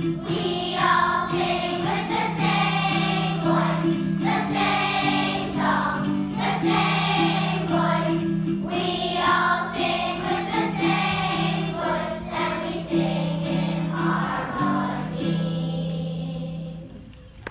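Children's choir singing together in unison, over steady held low notes of an accompaniment.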